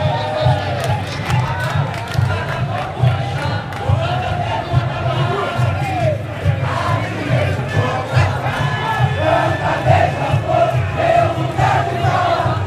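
A crowd singing a samba-enredo in unison over a samba school's bateria: a steady pulse of deep surdo drums with sharp snare and other percussion strokes.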